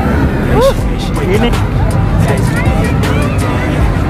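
Steel roller coaster train rumbling along its track, with riders' voices rising and falling over it, under background music.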